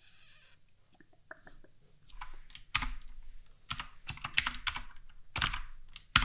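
Typing on a computer keyboard: an irregular run of key clicks that starts about two seconds in, some in quick clusters.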